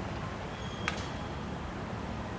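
Steady low background rumble with a single sharp click a little under a second in.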